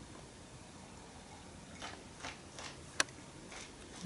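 A man sipping from a handheld mug and handling it: over quiet room tone come a few faint short sounds about two seconds in, and one sharp click about three seconds in.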